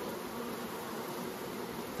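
Honeybees buzzing: a steady, even hum.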